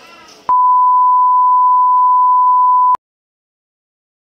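A loud, steady electronic beep on one pitch, starting about half a second in and cutting off abruptly after about two and a half seconds. Faint background chatter comes just before it.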